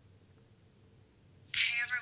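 Near silence, then about one and a half seconds in a woman's high-pitched voice starts suddenly, playing from a laptop.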